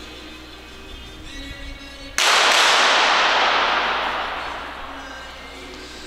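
A rapid series of .22 sport-pistol shots fired in an indoor range hall, starting about two seconds in. The shots run together with their echo into one loud crackle that dies away over about three seconds.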